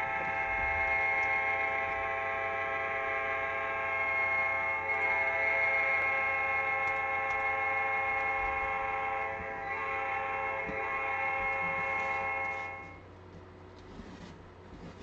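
Red rotating beacon light's alarm giving one long, steady horn-like blare that cuts off about a second before the end, set off as the break gets under way.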